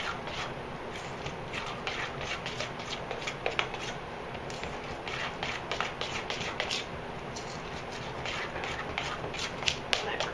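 A utensil stirring thick waffle batter in a stainless steel mixing bowl: an irregular run of quick scrapes and taps against the metal, a few a second.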